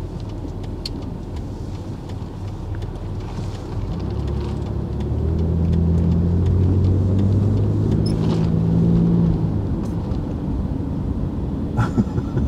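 Car engine and road noise heard from inside the cabin as the car pulls away from a stop and gathers speed. The engine note grows louder about four to five seconds in, holds steady for several seconds, then eases off.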